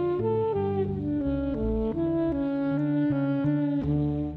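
Saxophone playing a jazz melody of held notes, one after another, over a low bass line.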